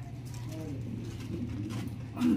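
A pigeon cooing softly a few times over a steady low hum.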